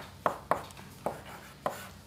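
Chalk tapping and scraping on a blackboard as symbols are written: about four sharp, irregularly spaced taps.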